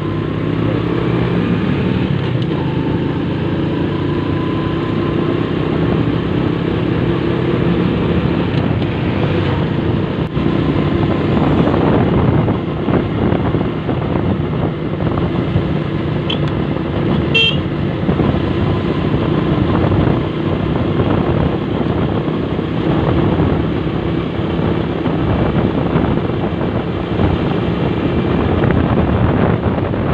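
Motorcycle engine running steadily at cruising speed as the bike rides along the road, with a brief high-pitched beep a little past halfway.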